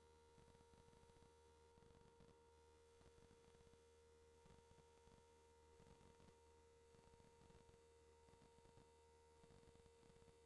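Near silence, with only a faint steady electrical tone and low hum on the recording.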